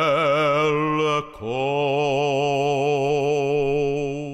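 A man's solo liturgical chant in Hebrew: two long, sustained notes with a wavering vibrato, the first breaking off a little after a second in for a breath and the second held through the rest.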